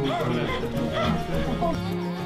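Background music, with short, wavering high cries from a human voice over it.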